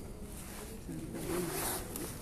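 Rustling handling noise right at a phone's microphone as a hand covers and moves the phone, a scratchy rustle about a second in, with a faint voice behind it.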